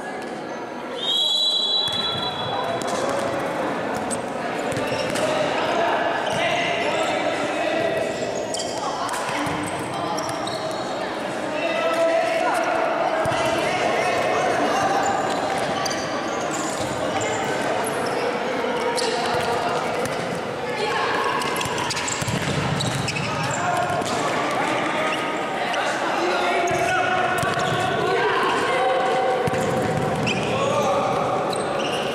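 A referee's whistle blows once, briefly, about a second in to start play. Then a futsal match goes on in a large hall: the ball is kicked and bounces on the wooden court, with players and spectators shouting throughout and echoing.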